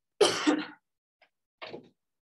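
A person coughing: a loud double cough, then a softer cough about a second and a half in.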